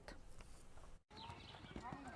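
Near silence: faint room tone, then after a brief dropout about a second in, a faint outdoor background with a few faint high chirps.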